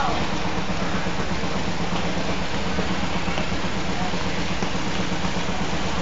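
A steady rushing din with a low hum running under it, without clear breaks or separate events.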